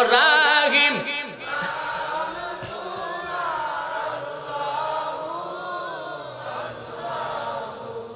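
A man's voice chanting loudly with a wavering vibrato through a microphone and PA for about the first second, then the chanting carries on more softly in long, slowly gliding notes.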